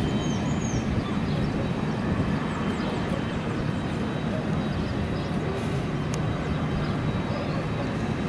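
Twin-engine propeller airplane climbing out after takeoff, a steady low engine drone.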